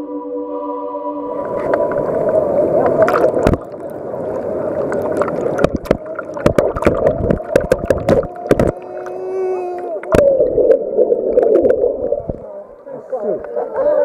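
Muffled splashing and bubbling water picked up by an underwater camera in a swimming pool, with many sharp knocks against the camera and a brief muffled voice a little past the middle.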